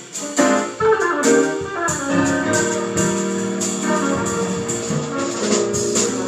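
A small live band playing an instrumental piece: held keyboard chords and sustained wind-instrument notes over drums, with regular cymbal strokes.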